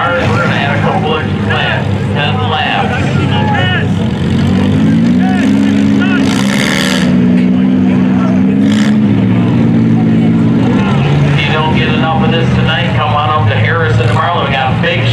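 Engines of several modified front-wheel-drive race cars running around a dirt track. One engine climbs to a higher steady pitch about four seconds in, holds it for about five seconds, then drops back. A brief loud burst of noise comes in the middle.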